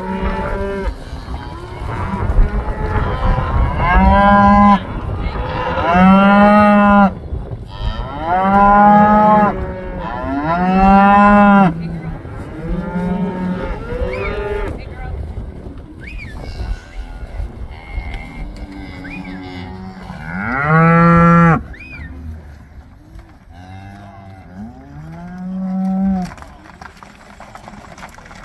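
Herd of red Angus-type cows and calves bawling as they are driven along: a dozen or so long, arching moos from different animals, one after another, thinning out in the last few seconds.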